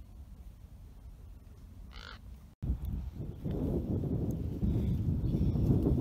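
A single short bird call about two seconds in, over faint wind. After a sudden break, wind rumbles on the microphone and grows louder.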